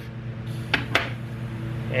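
Steel forceps' ratchet clicking open twice, about three-quarters of a second and a second in, releasing a soft hiss of air from a clamped fuel-tank vent line: the tank has held pressure overnight, showing no leaks. A steady low hum runs underneath.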